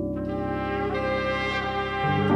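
Music: a French horn comes in just after the start, playing sustained notes over held keyboard chords.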